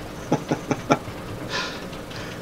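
Dogs barking off in the background: four quick barks in the first second, followed by a brief hiss.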